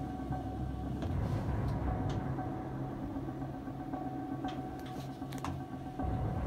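Steady low hum and rumble inside a submarine's small metal compartment, with a faint steady tone over it and a few light knocks about four and a half to five and a half seconds in.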